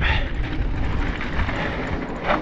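Wind rushing over the microphone and mountain bike tyres rolling fast over hard-packed dirt, a steady deep rumble.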